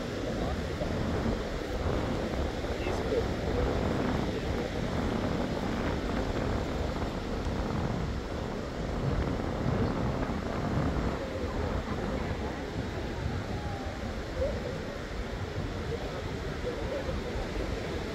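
Beach ambience: the steady wash of small surf, with wind on the microphone and the chatter of people on the sand.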